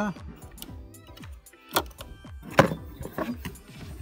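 Sharp plastic clicks and knocks from hands handling the wiring and plastic cover around a car's engine control unit: two distinct clicks about two seconds and two and a half seconds in, the second the loudest, over faint background music.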